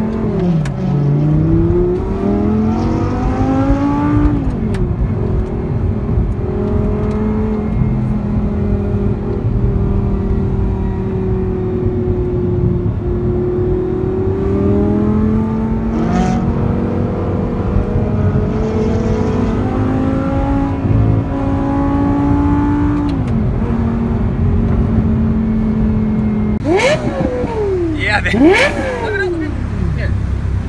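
Audi R8's V10 engine heard from inside the cabin, its pitch climbing under acceleration and dropping at gear changes, then holding steady at cruise. Near the end a sports car engine revs hard several times close by.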